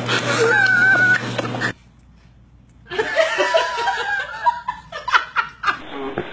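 A person laughing in short bursts from about three seconds in. Before that comes a brief high, wavering vocal sound over a low hum, then a second of near silence.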